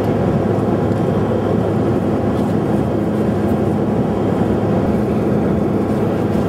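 Steady cabin noise of an airliner in flight, heard from inside the cabin: the engines' drone and the rush of air, with a faint low hum running through it.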